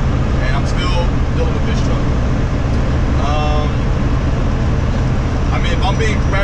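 Steady low drone of a semi-truck's engine and road noise heard inside the cab while driving at highway speed.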